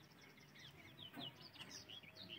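Faint birdsong: many quick, high chirps from small birds, overlapping one another.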